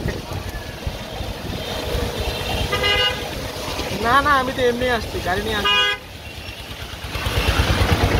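Two short vehicle horn toots in rain-soaked street traffic, about three seconds in and again just before six seconds, heard from inside an open auto-rickshaw over the steady rumble of the ride and the hiss of rain and wet tyres, which grows louder near the end.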